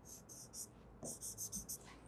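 A stylus drawing quick strokes on the glass of an interactive display as two small asterisks are marked. The faint scratching comes as a few short strokes, then a quicker run of about six strokes from about a second in.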